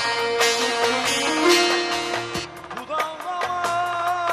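Bağlama (Turkish long-necked saz) plucked in a quick folk melody, backed by a Korg Pa800 arranger keyboard. About three seconds in, the quick run gives way to a long held melody note with a slight waver.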